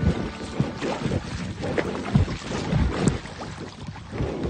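River water splashing and sloshing irregularly around a small inflatable boat close to the microphone, with wind buffeting the microphone.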